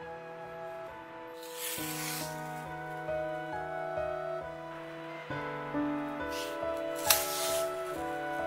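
Soft instrumental background music with held notes, over which adhesive tape is pulled off its roll in three short rasping strips: one about two seconds in and two close together near the end, the last starting with a sharp crack and the loudest.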